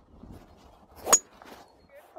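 Four wood striking a golf ball off the fairway: one sharp click about a second in, with a brief high ring.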